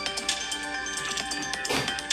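Background music: bright held notes over a light, regular beat, with a short burst of noise near the end.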